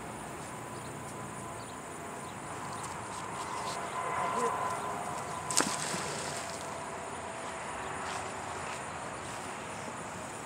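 A 4200-pound-pull neodymium fishing magnet on a rope is thrown into a canal and lands with one short splash a little past halfway through, over a steady outdoor background.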